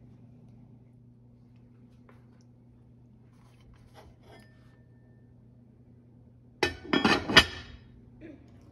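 Aluminium pot lid set onto a steamer pot, clattering in a short run of metallic clinks about a second long near the end, the last knock the loudest. Before it there is only a faint steady low hum and a few soft clicks.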